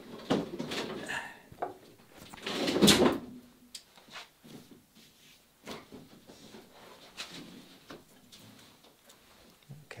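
Overhead lifting tackle being hauled by hand to raise a wooden boat hull: sliding, scraping handling noises with a loud burst about three seconds in, then scattered light clicks and knocks.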